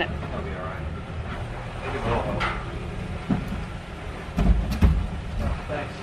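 Manual wheelchair rolling down a steep jetway ramp over a steady low rumble, with a few heavy thumps about four and a half to five seconds in.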